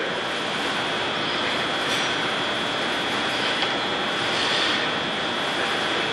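Audience applause: a steady burst of clapping from a room full of people that starts as soon as the speaker finishes a line and keeps going at an even level throughout.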